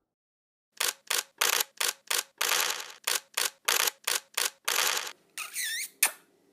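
Animated-outro sound effect: a fast, uneven run of about a dozen sharp noise bursts, some clipped short and a couple drawn out. It ends in a brief warbling, whistle-like swoop and a final hit.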